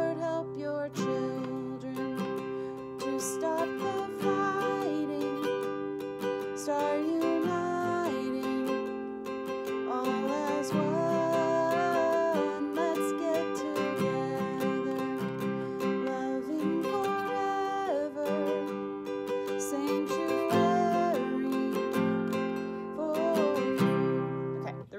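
Nylon-string classical guitar, capoed at the fifth fret, strummed steadily through the simple G, D and C chord shapes of a verse, with a woman singing the melody along with it.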